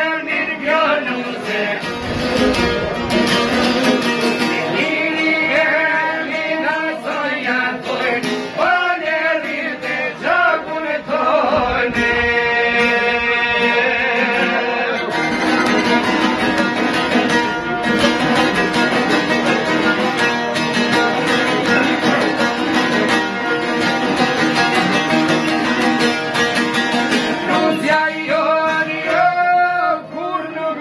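Albanian folk song: singing over plucked-string accompaniment, with steady held instrumental notes in the middle.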